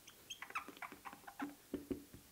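A marker writing on a whiteboard, squeaking and scratching faintly in many short, irregular strokes as the letters are formed.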